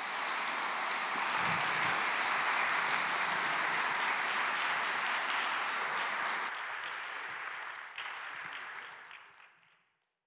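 Audience applauding: dense, steady clapping from a full hall that thins out and dies away over the last few seconds.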